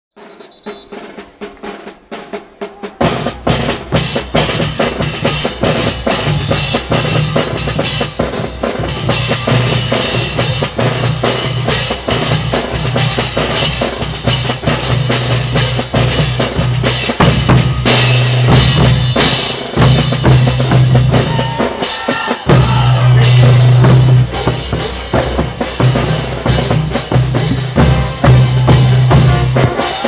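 Live band music for a caporales dance: snare and bass drum driving a steady beat over sustained low notes. It comes in faintly and is at full loudness from about three seconds in.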